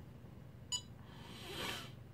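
A single short, high electronic beep about three quarters of a second in, given as the quad's on-screen menu cursor steps down one line. It is followed by a faint soft hiss near the end.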